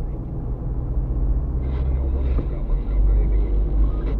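Car driving on a city road, heard from inside the cabin: a steady low rumble of engine and tyres, getting somewhat louder in the second half.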